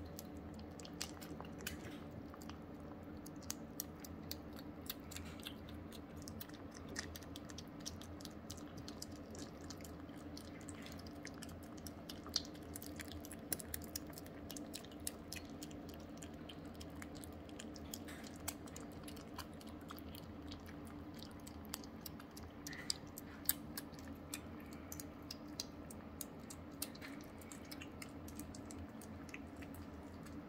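Two young kittens eating soft weaning food from ceramic bowls: many small, quick wet clicks of chewing and licking, with a faint steady hum underneath.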